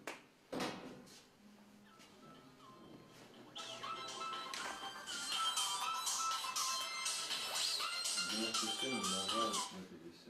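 A mobile phone ringtone: an electronic melody of stepping held notes that starts about three and a half seconds in and plays for about six seconds, after a single knock on the table near the start.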